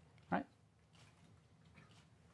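A man says one short word with a rising pitch, then faint room tone in a large hall.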